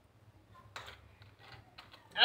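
A few faint clicks as the plastic cap of a soda bottle is twisted open, over near silence.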